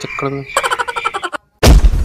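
Cartoon-style comedy sound effects dubbed over a fall: a rapid croaking rattle, a split second of dead silence, then a sudden loud booming hit as the man drops to the ground.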